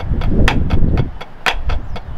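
Two pairs of drumsticks striking a rubber practice pad together in a steady rhythm, about four strokes a second, in an accent-tap exercise with a short, dry buzz stroke in place of the first tap after each accent. A low rumble runs underneath.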